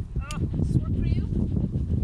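A Pembroke Welsh Corgi whining in short, bending cries, twice, over a steady low rumble. The dog is unhappy at being confined in a cart and kept from moving around.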